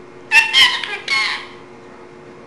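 Indian ringneck parakeet vocalising: two short, high-pitched calls in quick succession in the first half.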